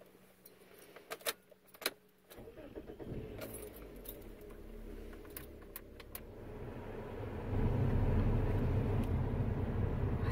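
Car keys jangling and clicking at the ignition, then the car's engine starts about two and a half seconds in and runs steadily. About seven and a half seconds in the low running noise grows clearly louder.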